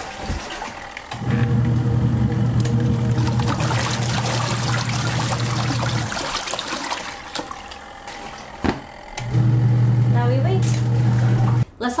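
Kuppet portable twin-tub washing machine's wash motor humming as it churns water and laundry in the wash tub. The motor hum stops for about three seconds around the middle while the water keeps swishing, then starts again, the stop-start agitation of the wash cycle.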